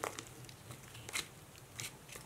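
Soft rustling of paper and a sheer ribbon as hands handle a handmade paper tag album, with a few brief crinkles about a second apart.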